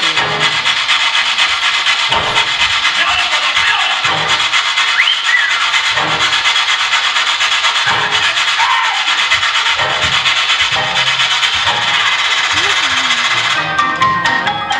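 A harsh, rasping scraping noise, like sanding or rubbing, running through the performance's soundtrack, with faint music underneath and a few brief rising and falling tones.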